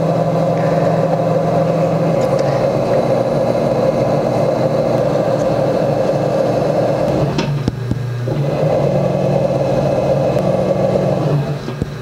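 A metal trimming tool scraping the bottom of a leather-hard clay bowl as it turns on an electric potter's wheel, a steady grating hiss over the low hum of the wheel motor. The scraping breaks off a little past halfway with a few light knocks, then carries on.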